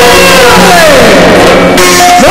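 Yakshagana ensemble music played loud, with maddale and chande drums and a steady drone under it. A long falling glide in pitch runs through the middle.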